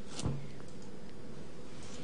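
A pause in speech: steady background hiss and a faint constant hum, with one short click about a quarter second in.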